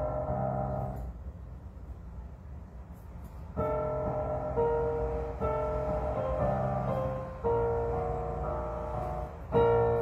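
Digital piano played in slow, held chords: a chord dies away about a second in, there is a pause of two or three seconds, and then the playing picks up again with sustained chords under a simple melody.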